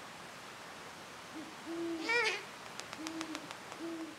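Great horned owl hooting: a series of deep, low hoots starting about a second and a half in, with a louder, higher, wavering call about two seconds in. Several sharp clicks follow around the three-second mark.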